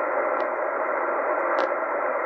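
Steady hiss of a Tecsun PL-990x shortwave receiver in upper-sideband mode on 2749 kHz, heard in a pause between words of the broadcast, with two faint clicks about half a second and a second and a half in.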